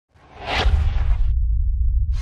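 Title-card sound effect: a whoosh that swells up and peaks about half a second in, over a deep low rumble. The whoosh cuts off just past a second in, while the rumble carries on.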